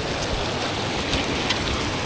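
Steady rush of floodwater pouring through a spillway.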